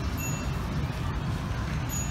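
Steady low outdoor rumble, with a few brief, thin high-pitched chirps or beeps near the start and again near the end.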